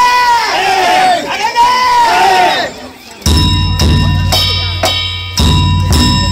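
A group of voices chants a rising-and-falling festival call. About three seconds in, the danjiri's taiko drum and hand gongs strike up in a loud steady beat of about two strokes a second, with the metal gongs ringing on between strokes.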